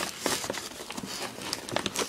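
Packaging crinkling and rustling as a hand rummages inside a mailer bag, a quiet irregular string of small crackles.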